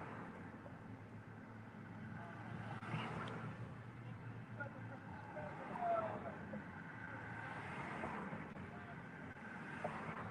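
Steady low hum of a car heard from inside its cabin, with faint voices now and then.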